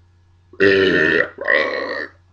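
A man burping loudly in two long belches, the first about half a second in and the second just after it, after drinking beer.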